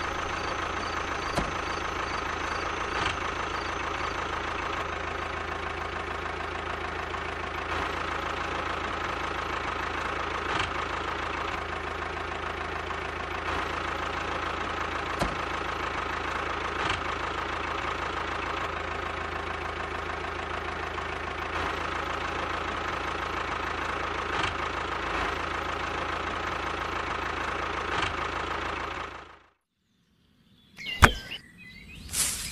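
Steady engine-like running sound with a constant low hum, like a small diesel engine, heard while the miniature toy tractor drives. It cuts off suddenly near the end.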